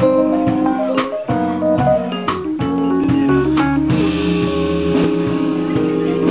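Live nu-jazz band playing an instrumental passage: a guitar carries the melody over a bass line, with sharp percussive hits keeping time.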